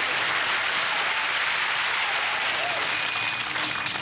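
Studio audience laughing and applauding, easing off near the end.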